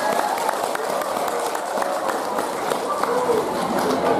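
Audience voices and chatter with scattered handclaps, a dense, unbroken crowd sound.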